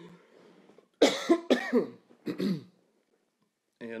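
A man coughing: a short run of several loud coughs about a second in.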